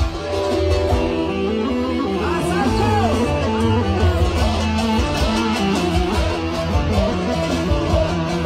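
A live Roma orchestra (ork) playing kyuchek dance music, loud and steady: a gliding melodic lead over a strong bass line and a regular drum beat.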